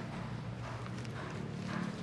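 Footsteps walking on pavement at an even pace, about two steps a second, over a low steady hum.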